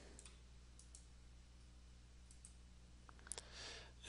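Near silence with a steady low hum and a few faint computer clicks, the clearest a little over three seconds in.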